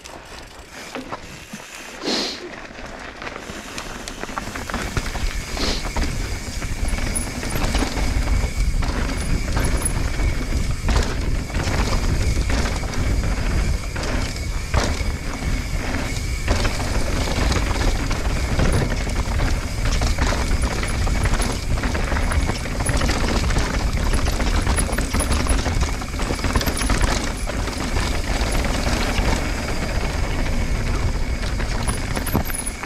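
Mountain bike descending a dirt and rock downhill trail: wind rumble on the camera microphone and tyre roar, growing louder over the first several seconds as speed builds, with frequent knocks and rattles from bumps.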